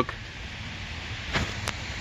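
Steady low rumble of outdoor background noise, with two faint short clicks about a second and a half in.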